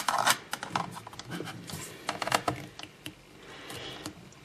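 A knife blade clicking and scraping against a netbook's plastic memory-bay cover and casing as it is pried at the seam: a run of small, irregular clicks, loudest at the start.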